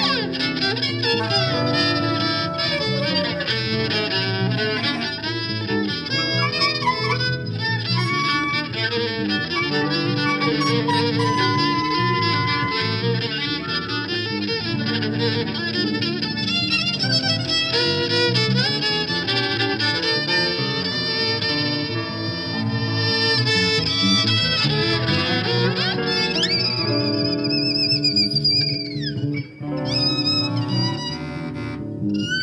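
Instrumental string-trio music: violin playing over guitar and bass. Near the end, high wavering notes slide downward.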